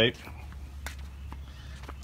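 Low steady rumble on the microphone, with a few faint ticks.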